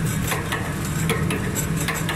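Automatic can sealing machine and its modular plastic belt conveyor running: a steady low mechanical hum with frequent irregular metallic clicks and rattles.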